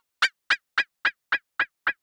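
Delay repeats from Bitwig's Delay+ device on a polysynth, set to two-sixteenths at 110 BPM: short, evenly spaced chirps about four a second, each with a quick bend in pitch. The device is in Repitch mode, so the change of delay time is heard in the pitch of the repeats.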